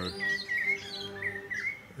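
Small birds chirping: short high chirps repeated several times across the two seconds.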